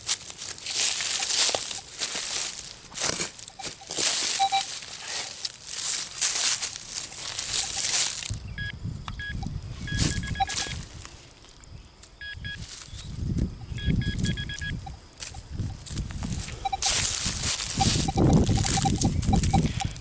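A spade cuts and scrapes into grassy soil and dry leaves for the first eight seconds or so. Then soil is broken up and handled close by while a metal detector gives short, repeated electronic beeps in a few clusters, signalling a metal target in the loosened earth.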